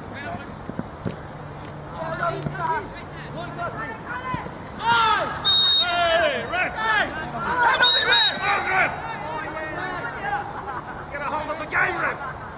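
Spectators and players shouting excitedly during a goalmouth scramble, many voices overlapping and loudest in the middle of the stretch. Two short high whistle notes sound within the shouting.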